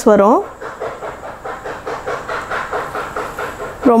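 Saree fabric rustling as it is handled: a quick, uneven run of soft rustles.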